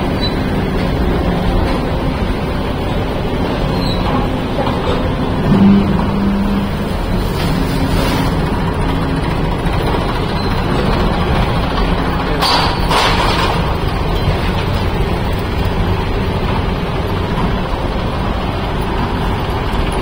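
Diesel tractor engines running steadily close by, with a brief louder surge about six seconds in and a short hiss around twelve seconds.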